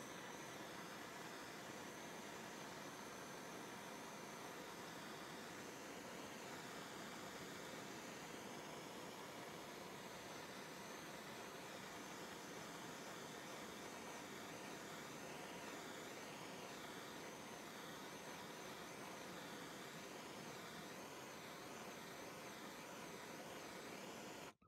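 Small handheld gas torch burning with a faint, steady hiss as its flame heats the old vinyl dip-coated grips on a pair of pliers to soften them.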